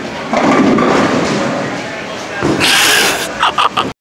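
Bowling ball hitting the pins: a sudden crash of pins clattering, fading over about two seconds. A short rush of noise follows near the end.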